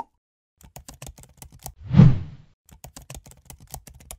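Keyboard-typing sound effect: a quick, irregular run of keystroke clicks as end-screen text types itself on, with one louder swell of noise rising and fading about halfway through.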